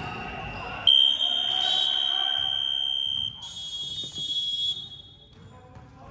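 Electronic basketball scoreboard buzzer sounding one long, steady high-pitched tone, starting about a second in and lasting about four seconds, loudest for the first two and a half: time has run out on the clock at the end of the period.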